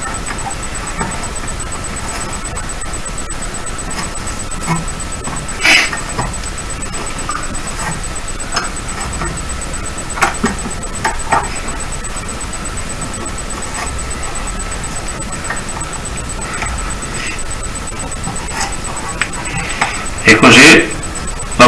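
Faint scattered clicks and scratches of stiff plastic bristles being pulled one by one from the twisted wire stem of a bottle brush, the most noticeable about six seconds in, over a steady background hum with a thin high whine.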